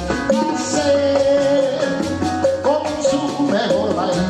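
Live Latin American band playing between sung lines: a held, wavering melody over guitars, keyboard, drums and bass.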